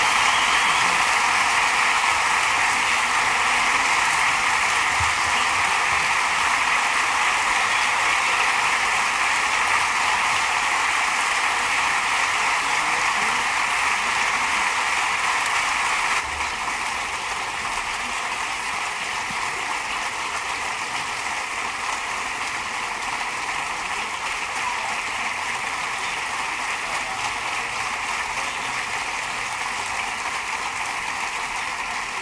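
A large audience applauding: dense, continuous clapping with no single claps standing out, which drops a little in level about halfway through.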